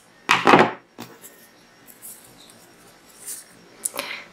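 Scissors set down on a table with a brief clatter about half a second in, followed by faint rustling of yarn and a steel crochet hook being handled.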